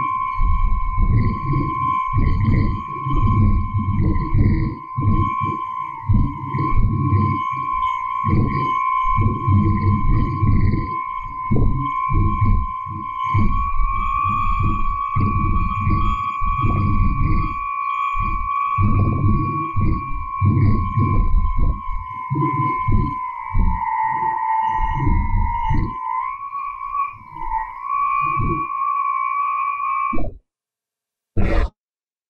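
Shortwave-radio interference from a household DC motor, played back after software filtering and frequency shifting: a wavering whistle with a fainter higher one above it, over choppy low bursts that come and go irregularly like the rhythm of speech. In this processed noise the uploader hears what appears to be human speech.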